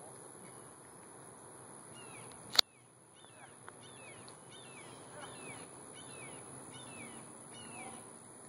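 Steady high-pitched insect drone, with a bird repeating a short falling chirp every half second or so from about two seconds in. A single sharp click about two and a half seconds in is the loudest sound.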